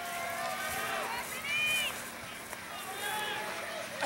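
Spectators shouting encouragement to passing runners, the calls faint and distant, over a steady open-air crowd hiss.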